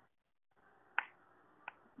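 Two short clicks in a near-silent pause: a sharp, louder one about a second in and a fainter one just over half a second later.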